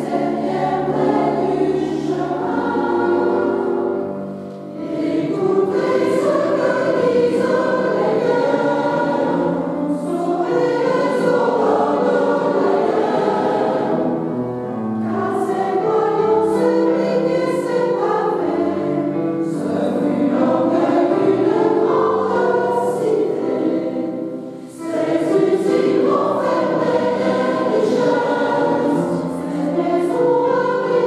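Mixed choir of men's and women's voices singing together in a reverberant church, with short breaks between phrases about four and a half seconds in and again near twenty-five seconds.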